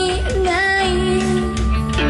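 A female singer holds a long sung note, stepping slightly in pitch early on, over a live rock band with guitar and drums, heard through a club PA.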